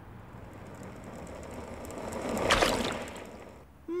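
A loose car tyre rolling along a street, growing louder up to a splash about two and a half seconds in as it runs through a puddle, then fading away.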